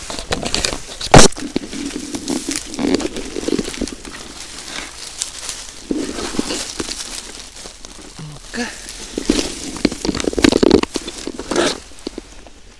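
Dry fallen leaves rustling and crackling as they are trodden on and pushed aside by hand to uncover and pick a porcini mushroom, with a single sharp knock, the loudest sound, about a second in.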